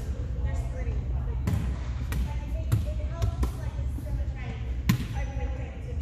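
A volleyball bouncing and being struck on a hardwood gym floor: about half a dozen sharp, irregular knocks, the loudest about five seconds in, heard over players' voices in the large hall.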